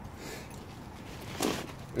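Quiet steady background hiss with one brief soft rustle, as of hands or clothing moving, about one and a half seconds in.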